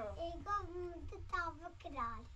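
A young child's voice in drawn-out, sing-song vocalizing without clear words.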